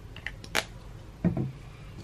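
Light clicks and a short knock of art supplies being handled on a tabletop as a pencil is picked up. The sharpest click comes about half a second in, and the louder knock a little past the middle.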